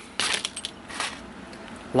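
Metal screws and wall anchors clicking and rattling against each other as they are moved about on a workbench: a quick cluster of small clicks in the first half-second, then one more click about a second in.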